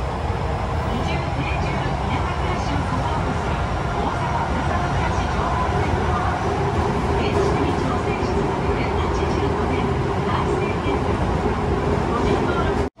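Inside an Osaka Metro 66 series subway car running into a station: steady rumble of wheels and traction motors, with a muffled onboard announcement over it.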